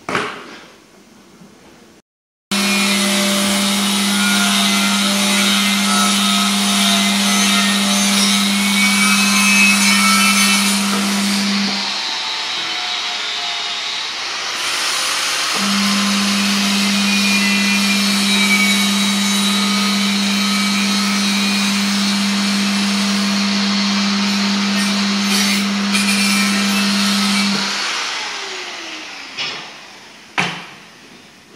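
Handheld power tool running against the edge of a bare alloy wheel rim, a steady motor hum under a rasping scrub. It runs in two long stretches with a short break near the middle.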